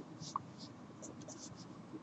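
A marker pen writing on paper: a few short, faint scratchy strokes.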